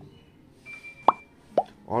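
Two quick rising pop sound effects. The first and louder one comes a little past a second in, the second about half a second later, and a short steady high beep sounds just before the first. These are the overlay sounds of an animated subscribe button.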